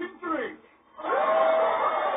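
A cartoon crowd of many voices cheering together, played through a television speaker. It bursts in loudly about a second in, after a short spoken line and a brief pause.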